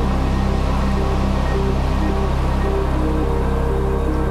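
Background music: a steady low drone under a slow line of held notes.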